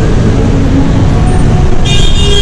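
Loud, steady low rumble of road traffic noise, with no speech over it.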